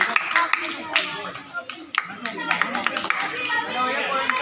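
Taekwondo sparring: irregular sharp slaps of kicks landing on padded chest protectors, several in a few seconds, under the voices and shouts of onlookers.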